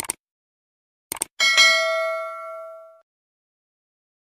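Subscribe-button animation sound effect: a quick double mouse click, two more clicks about a second later, then a bright notification-bell ding that rings out and fades over about a second and a half.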